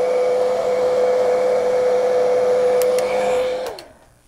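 Handheld hot-air dryer blowing on freshly painted acrylic, a steady whir with a steady hum. It switches off a little before the end, and its tone falls away as the motor winds down.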